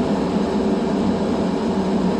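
Steady drone of a semi truck's engine and road noise inside the cab while driving, with a constant low hum.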